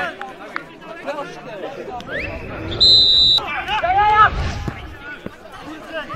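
A referee's whistle gives one short, high, steady blast about three seconds in, the loudest sound here, amid players shouting on the pitch; one man's loud call follows right after the whistle.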